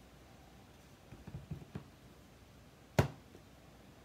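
Clear acrylic stamp block being inked, a few soft taps on the ink pad, then set down on the card strip with one sharp clack about three seconds in.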